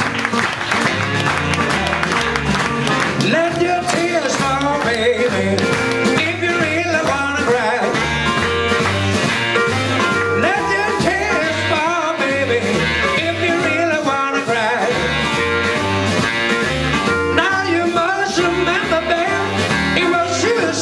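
Live band playing a West Coast jump-blues instrumental: electric guitar lead with bent notes over a stepping bass line and drums.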